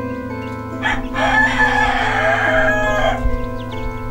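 A rooster crows once, one long crow of about two seconds that drops in pitch at the end, over background music.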